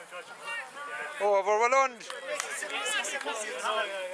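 Voices on a rugby touchline, with one loud, drawn-out shout about a second in.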